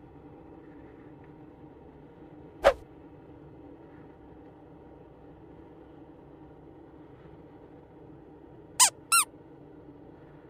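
Three short, sharp squeaks with curving pitch: one a little over a quarter of the way in, and two in quick succession near the end, over a faint steady hum.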